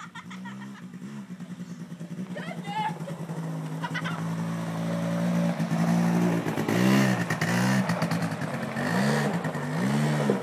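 A quad bike's engine running and growing louder, then from about halfway its pitch rises and falls several times, about once a second, as the throttle is opened and eased.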